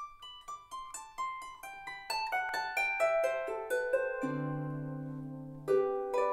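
Two Celtic harps playing a traditional jig, the music starting with a run of quick plucked notes. About four seconds in a deep bass note and chord ring out for over a second before the quick plucking resumes near the end.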